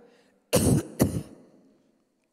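A woman clearing her throat twice in quick succession, about half a second apart.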